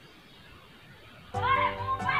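Quiet room tone at first. About one and a half seconds in, loud children's voices mixed with music start suddenly.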